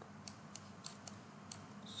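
About five faint, irregular clicks from a computer mouse, over a faint steady low hum.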